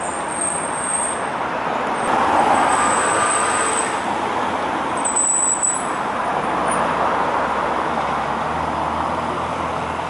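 City street traffic: cars driving slowly over cobblestones, a steady roadway din without any engine revving.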